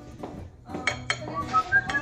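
Metal fork clinking and scraping against a ceramic dinner plate while flaking a cooked trout fillet, with a few sharp clicks about a second in. A few short whistled notes follow near the end.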